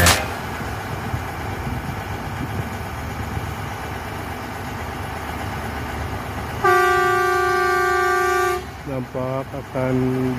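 Rail track-maintenance machine running as it rolls along the track with a steady rumble, then one steady horn blast of about two seconds near the end, signalling that it is moving.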